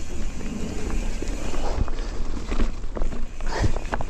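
Mountain bike being ridden up and over a log on a rocky, leaf-covered trail: tyres rolling over dirt and rock with a few sharp knocks. A steady low rumble of wind on the handlebar camera's microphone runs underneath.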